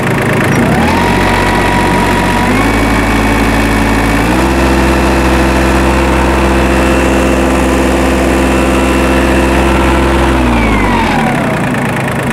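Isuzu diesel engine of a Hitachi EX15-1 mini excavator being throttled up from idle in steps over the first four seconds, held at high revs for about six seconds, then let back down to idle near the end. It runs evenly.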